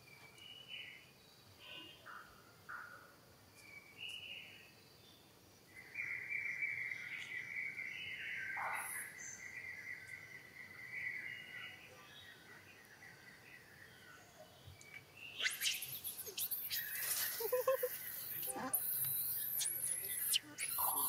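Outdoor woodland birdsong: scattered short chirps, a steady high trill lasting about five seconds in the middle, then louder, sharp high-pitched squeaks and clicks for the last few seconds.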